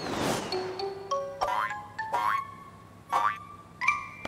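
Cartoon soundtrack music and comic sound effects: a swish at the start, then a run of short plucked-sounding notes broken by four quick upward-sliding swoops.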